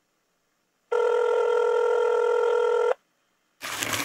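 A telephone ringing once: one steady two-second ring, the signal of an incoming call. It is followed near the end by a short, sharp burst of noise.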